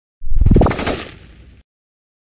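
Channel-logo intro sound effect: a sudden loud burst of rapid crackling pops with a quick upward sweep, dying away over about a second and a half.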